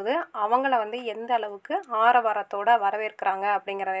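Speech only: one voice narrating steadily, with no other sound heard.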